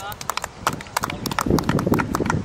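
Scattered, irregular hand claps from a small group of people, several claps a second. A low rumble joins about three quarters of the way in.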